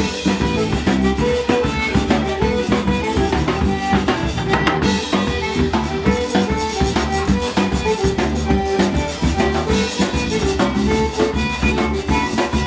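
Live zydeco band playing an up-tempo number: an accordion carries the tune over a drum kit keeping a steady beat, with a stringed instrument underneath.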